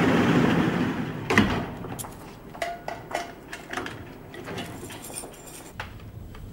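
Barred metal cell gate sliding along and shutting with a clang about one and a half seconds in, followed by a series of lighter clicks and rattles of keys working the lock.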